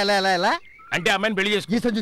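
Telugu speech: a voice draws out one long syllable with a quavering, wobbling pitch. After a short pause it carries on talking.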